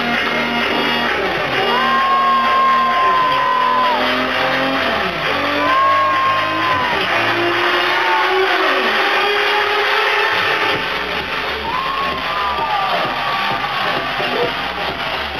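Loud electronic dance music from a DJ set over a club sound system, with long high notes that slide up and down every few seconds.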